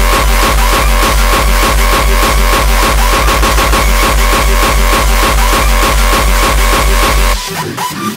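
Uptempo hardcore electronic dance track: a fast, heavy kick drum hitting about three to four times a second under a high synth line. The kicks cut out near the end for a short break.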